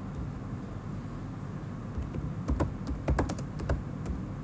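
Typing on a computer keyboard: a run of about eight to ten quick key clicks in the second half, over a steady low hum.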